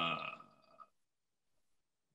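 A man's drawn-out hesitation 'uh', trailing off within the first second, then silence.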